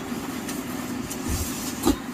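Silk saree fabric rustling as it is spread and smoothed by hand on a table, over a steady low background hum, with a soft thud and a short sharp tap near the end.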